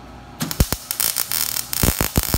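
Wire-feed (MIG) welder arc crackling and spitting as it tack-welds a steel expander pan onto a foothold trap's pan. It starts about half a second in with a short spurt, then runs on in a longer burst.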